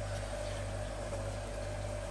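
Steady low machine hum with a faint higher tone above it, unchanging throughout, from the running continuous still's equipment.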